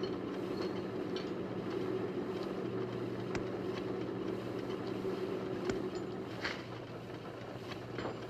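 Heart-lung machine's bypass pump running with the patient on full bypass: a steady mechanical hum with a few faint clicks.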